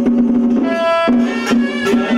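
Traditional Taoist ritual ensemble music: a sustained wind-instrument melody over a steady drone, punctuated by a few sharp percussion strikes.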